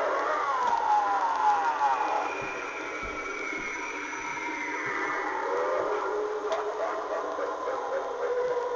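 Tekky Toys lurching vampire animatronic's built-in speaker playing its sound effects as it activates, starting suddenly. Wavering, falling siren-like tones fill the first couple of seconds, then a steadier, layered sound follows, thin and with no bass.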